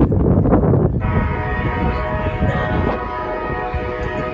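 Train air horn sounding one long, steady chord of several tones, starting about a second in.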